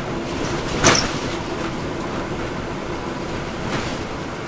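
Cabin noise inside a moving NABI 416.15 transit bus: a steady rumble of its Cummins ISL9 diesel engine and road noise, with a single sharp knock about a second in.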